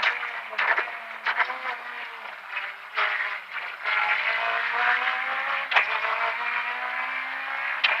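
Rally car engine heard from inside the cockpit: its note drops as the car slows for a tight right-hand bend, rises as it pulls out, then holds fairly steady. A few sharp cracks sound along the way.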